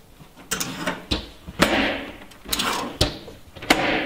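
Metal legs of a folding camp table being folded up and the table handled: about half a dozen sharp clicks and knocks with scraping and rustling between them.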